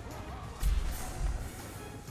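Slot game music playing, with two heavy low thumps about half a second and a second and a quarter in.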